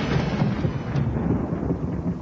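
Rolling rumble of thunder, mostly low, with its upper part dying away over the two seconds.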